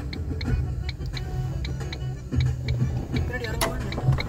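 Car turn-signal indicator ticking steadily, about three clicks a second, over the low rumble of the moving car.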